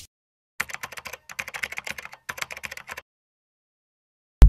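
Fast keyboard typing clicks, a typing sound effect, starting after a short silence and stopping about a second before the end.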